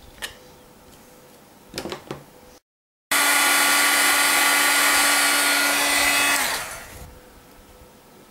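Embossing heat tool running: a loud steady fan whine with hiss, starting abruptly about three seconds in and dropping in pitch as it winds down a little over three seconds later, as it heats white embossing powder on a stamped sentiment. Before it, a couple of faint taps as a small rubber stamp is pressed with a stamp-positioning tool.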